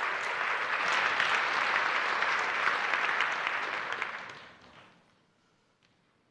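Audience applauding: many hands clapping, dying away about four to five seconds in.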